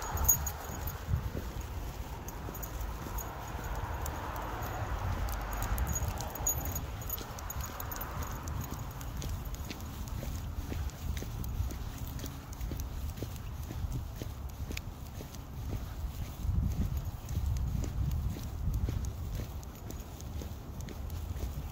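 Footsteps of a person and a leashed dog walking on wet pavement, with many light clicks throughout over a steady low rumble.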